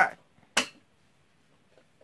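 A single sharp click about half a second in: the brake lock on a caster wheel of a steel standing frame being pressed to lock the wheel.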